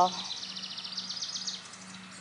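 A small bird's rapid, high trill lasting about a second and a half, fading out near the end.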